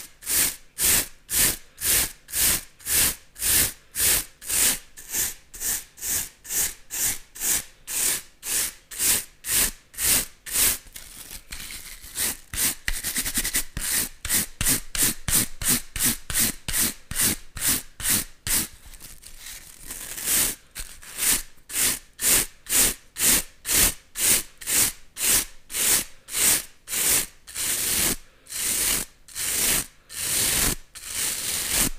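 Two stiff bristle brushes rubbed bristles against bristles close to a microphone, in even scratchy strokes about two a second. Between about 11 and 20 seconds in the strokes quicken into a near-continuous scratching, then return to separate strokes.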